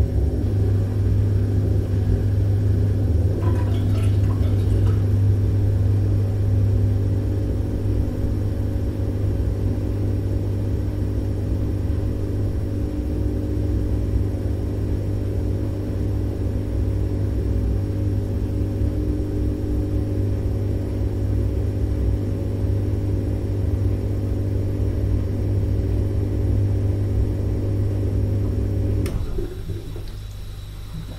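Dishwasher running: a steady low hum with a rough rushing texture over it, and a few faint knocks about four seconds in. Near the end the hum drops suddenly to a quieter, thinner sound.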